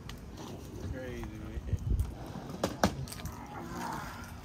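A few sharp clicks and knocks of things being handled on a folding table while a boxed RC car is picked up, the loudest pair about three seconds in, with a faint voice in the background.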